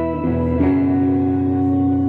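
Electric guitar playing slow, sustained chords as a song begins, moving to a new chord about half a second in and letting it ring.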